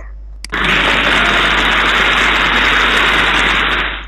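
A loud, steady, noisy sound effect from a computer vocabulary game, played as the chosen meat item moves into the shopping cart. It starts about half a second in and cuts off sharply just before the end.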